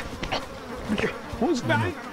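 Mosquitoes buzzing close by in short passes that waver up and down in pitch.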